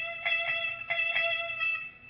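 Guitar picking high notes up the neck in an E minor pentatonic solo box, the same high note re-struck several times and left to ring between picks.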